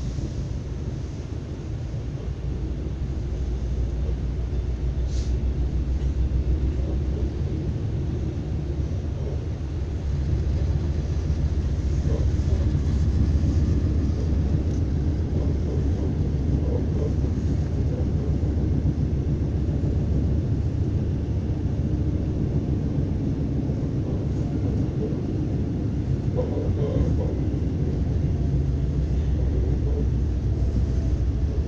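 An ES2G Lastochka electric train running, heard from inside the passenger car: a steady low rumble that gets louder over the first few seconds and steps up again about ten seconds in.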